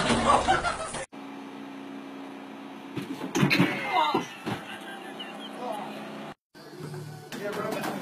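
Loud thumps and clatter of a person being thrown off a running treadmill in the first second, cut off abruptly. A steady low hum with brief cries and voices follows.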